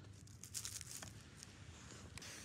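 Faint, scattered crunching and crinkling of snow as a plastic toy dog figurine is pushed about in it by hand.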